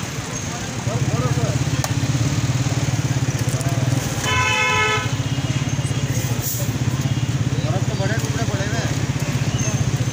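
Street traffic noise: a small engine starts running close by about a second in and keeps going steadily with a fast pulsing beat. A vehicle horn toots once, briefly, near the middle.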